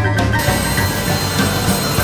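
Background music, with a steady rushing noise joining it about half a second in.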